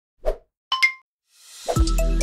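Sound effects of an animated logo intro: a soft pop, then two quick ringing blips, then a rising whoosh that swells into electronic music with deep, falling bass hits near the end.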